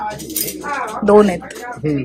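People talking, with a brief light rattle about half a second in.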